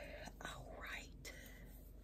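A woman's soft whispered speech, breathy and without voice, in the first half, then quiet.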